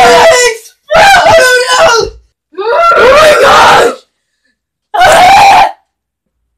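A girl screaming four times in short, very loud, high-pitched screams, about a second each with brief gaps between.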